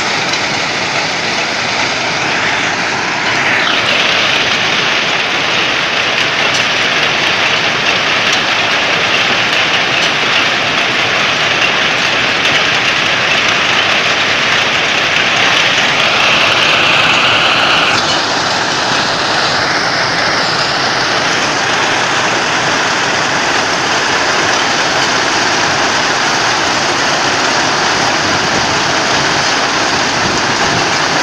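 Plasser ballast cleaning machine working along the track: its diesel engines, excavating chain and conveyors make a loud, steady din of machinery and rattling stone. The noise grows louder a few seconds in and eases a little about halfway through.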